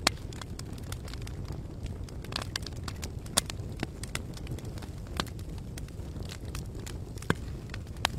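Crackling fire sound effect: a steady low rumble of flames with irregular sharp pops and crackles, a few of them louder.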